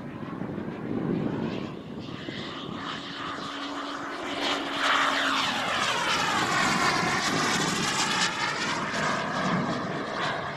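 Turbine engine of a model jet (I-Jet Black Mamba 140) running in flight as the jet passes overhead. The jet noise grows louder about halfway through and takes on a sweeping, phasing whoosh as it goes by.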